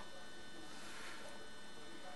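Steady electrical hum with a faint even hiss: background room tone with no other event.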